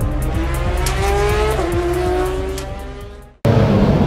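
Intro music with a steady beat, over which a racing car's engine sounds, its pitch dropping about one and a half seconds in as if passing by. The whole mix fades out just before the end, and then a loud new noise cuts in abruptly.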